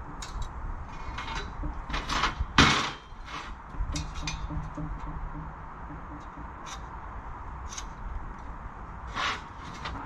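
Steel parts handled and knocked on a metal workbench: scattered light clanks and taps, with a louder metal clatter about two and a half seconds in and another near the end.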